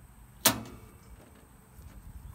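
A single sharp snap about half a second in as the latch on the top access hatch of a Lincoln Ranger 225 welder's sheet-metal housing is released, with a brief ringing after it as the hatch is opened.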